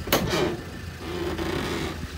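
A van's cargo door unlatching with a sharp click and swinging open just after the start, over the low steady rumble of the 2005 Ford Transit's diesel engine idling.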